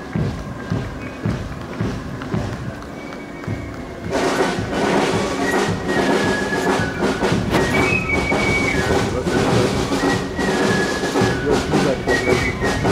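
A marching brass band starts playing about four seconds in and keeps playing. Before that, only quieter crowd and street sounds with a few thuds are heard.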